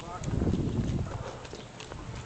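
A brief low rumble on the camera's microphone, lasting about half a second near the start, with faint voices in the background.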